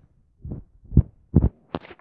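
Four dull thumps about half a second apart, with quiet between them.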